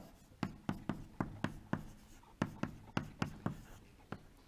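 Chalk writing on a blackboard: about eleven short, sharp taps of the chalk strokes in two quick runs, with a brief pause near the middle.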